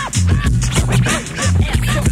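Hip hop DJ scratching a record on a turntable over the track's drum beat and bass line: several quick back-and-forth swipes a second, each bending up and down in pitch.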